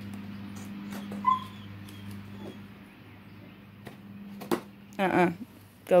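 Faint clicks and snips of small scissors working at a cardboard box, over a steady low hum. A short high squeak about a second in, and a voice briefly near the end.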